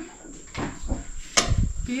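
A metal serving spoon knocking against pots and a glass plate as food is dished up, with one sharp clink about one and a half seconds in.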